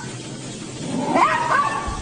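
A domestic cat meowing: one drawn-out call about a second in.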